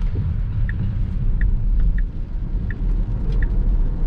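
Low tyre and road rumble inside a Tesla Model S Plaid's cabin as the electric car pulls away and speeds up on a wet road, with a soft regular tick about every 0.7 seconds.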